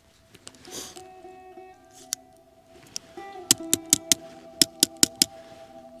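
Acoustic guitar music with held, plucked notes, and a run of about nine sharp clicks in the second half.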